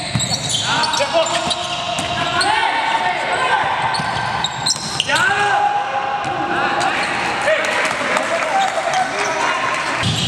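Live basketball court sound: the ball bouncing on a hardwood floor as it is dribbled, sneakers squeaking in many short chirps as players cut and stop, and players calling out.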